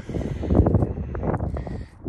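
Wind buffeting the phone's microphone outdoors: an irregular low rumble that gusts up and down, with a few brief handling knocks as the camera moves.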